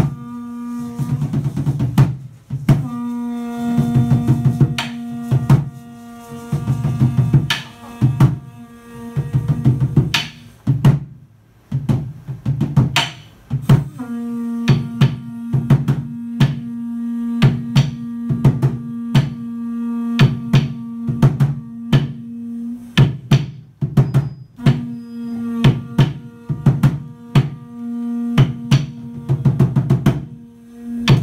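Large upright carved wooden drum, a huehuetl, beaten with sticks in a steady pattern of heavy strokes and lighter taps. Beneath it runs a sustained low blown tone that breaks off and restarts about three times.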